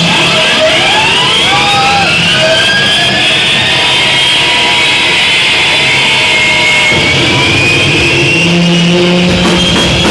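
Noise-rock band playing live at full volume: a dense wall of distorted noise with several sliding, rising pitches that starts suddenly. A steady low tone joins near the end as the drums are about to come in.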